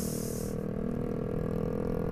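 Motorcycle engines running steadily in traffic, heard from the rider's seat, including the exhaust of the motorcycle just ahead: an aftermarket exhaust with its tip pointing steeply upward, really noisy. A brief hiss at the very start.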